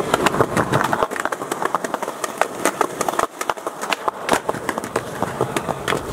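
Skateboard wheels rolling over a concrete sidewalk, a steady rumble with rapid clicks over the slab joints, and a few sharper clacks of the board in the last couple of seconds as the skater goes up for a nollie heelflip.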